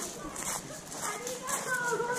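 Footsteps crunching on gravel at a walking pace, about two steps a second, with people's voices in the background.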